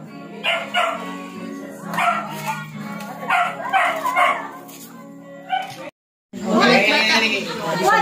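A dog barking and yipping several times over music playing in the background. After a short break in the sound, people talk loudly.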